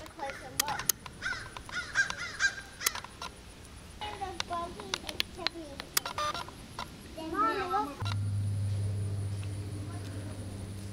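Indistinct voices talking, with sharp clicks among them, then a steady low hum that begins abruptly about eight seconds in.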